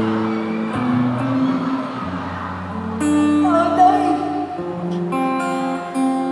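Live band music: strummed guitar chords with a singer's voice, picked up from among the audience in an arena.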